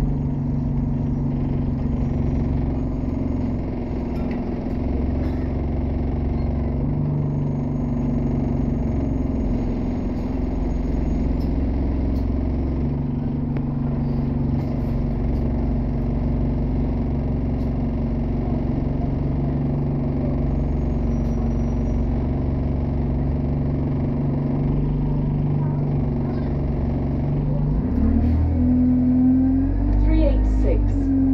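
Bus engine running while the bus is under way, heard from inside the passenger saloon: a steady low drone whose pitch and level shift every few seconds with the throttle, getting louder near the end.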